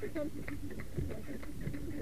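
A carriage horse's hooves clopping on a paved lane as it pulls along, a few beats a second.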